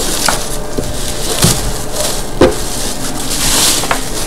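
Plastic bubble wrap crinkling and rustling as it is pulled off a small subwoofer, with a couple of light knocks from handling.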